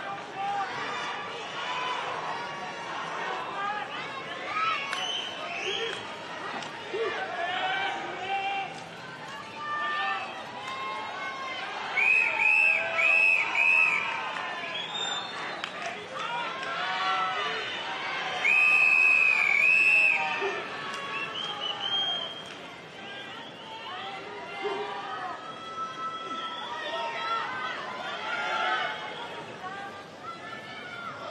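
Stadium crowd chatter, cut through by a referee's whistle: three short blasts about twelve seconds in, then one long blast a few seconds later, the signal that calls swimmers up onto the starting blocks.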